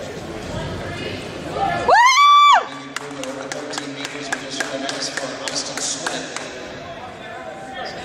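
A man's loud, high-pitched yell about two seconds in, rising, held for under a second and then falling away. Faint crowd murmur and scattered light clicks of the arena follow.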